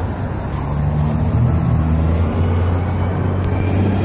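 A motor vehicle's engine running close by: a steady, loud, low rumble that grows a little louder after the first second.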